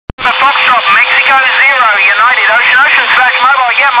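Amateur-radio voice on 40 m single-sideband (LSB), heard through a Kenwood TH-F7 handheld's speaker. The voice is thin and band-limited, with a faint steady tone under it. A brief click comes right at the start, before the audio comes in.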